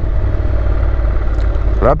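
Honda NC700X's 670 cc parallel-twin engine, fitted with an Akrapovic exhaust, running while the bike is ridden, under a steady low rumble of wind on the microphone.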